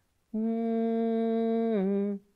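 A woman's voice humming one long, steady low note that dips slightly in pitch near the end, one phrase of a repeated vocal loop in an improvisation exercise.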